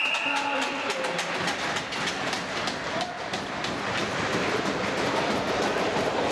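A short, single-tone referee's whistle right at the start, then a run of sharp clacks, a few per second, over the noise of the ice-hockey rink after a goal, thinning out after about four seconds.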